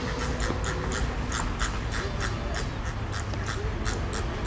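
A flock of Chilean flamingos calling: short honks following each other quickly, about five a second, over a low steady rumble.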